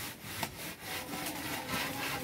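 Wooden plastering board scraped up and down over fresh cement render on a wall, in repeated rasping strokes about three a second, levelling the plaster.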